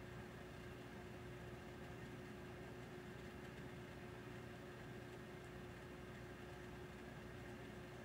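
Faint room tone: a steady hiss with a constant low hum and one steady tone, unchanging throughout.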